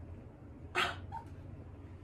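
A pet animal gives one short, sharp cry about a second in.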